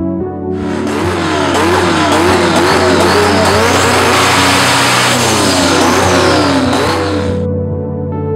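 Drag race car engine revved hard again and again, its pitch swinging rapidly up and down, starting about half a second in and cutting off shortly before the end, with music playing underneath.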